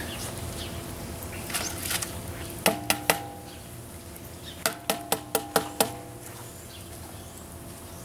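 A large stainless steel cooking kettle rings briefly under three quick knocks, then a run of six more, as a bowl is tapped against its rim to knock chopped bell pepper into the pot.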